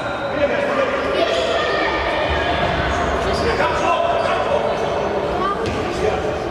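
Futsal ball being kicked and bouncing on a hard indoor court, with voices calling out, all echoing in a large sports hall.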